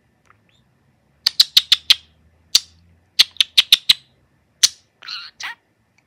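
A male budgerigar singing: a quick run of about a dozen sharp clicks and chirps between one and four seconds in, then two raspier chirps near the end. It is a contented budgie's song, sung in a good mood.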